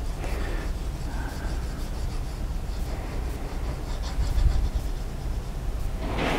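Graphite pencil shading on drawing paper, a steady scratchy rubbing, over a low room hum.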